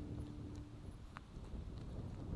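Footsteps of a person walking quickly on a paved road, sped up to double speed, heard as scattered sharp clicks over a low wind rumble on the camera microphone. The last held notes of a polka tune fade out in the first moments.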